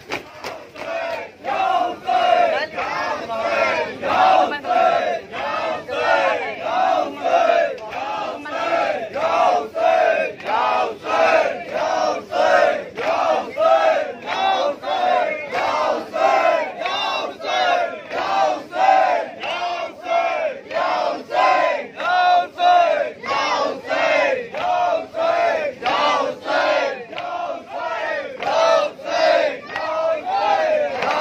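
A large crowd of Shia mourners chanting together in a procession, loud rhythmic shouts at an even beat of about three every two seconds.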